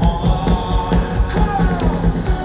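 Rock band playing live in an arena, heard from among the audience, over a steady drum beat. A falling pitched sweep comes about a second and a half in.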